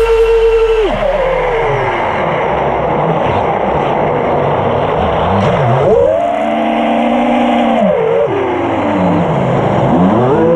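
FPV freestyle quadcopter's brushless motors and propellers whining over rushing wind noise. The pitch falls as the throttle comes off about a second in, rises and holds higher from about six to eight seconds, then falls again.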